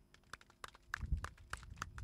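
Scattered hand clapping from a small crowd: thin, irregular claps, several a second.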